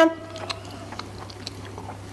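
A person chewing a bite of dry-cured, smoked chicken breast (basturma), soft and quiet, over a steady low hum; a spoken word trails off at the very start.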